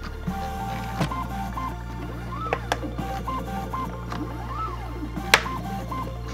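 Background music over the whine of a 3D-printed crust-cutting robot's stepper motors, stepping between pitches and gliding up and down as its axes move. There are a few sharp knocks, the loudest near the end, as the knife chops the sandwich crust.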